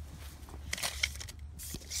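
Rubber garden hose rustling through grass as it is stretched out, with footsteps, in soft crackling rustles about a second in and again near the end over a low steady hum.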